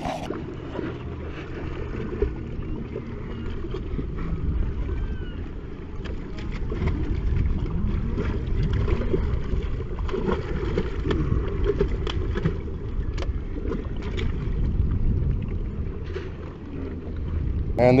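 Wind rumbling on the microphone over small waves lapping against shoreline rocks, steady throughout with faint scattered ticks.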